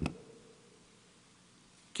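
A pause in a man's speech. It opens with one short, sharp click, then quiet room tone with a faint steady hum runs until his voice resumes at the very end.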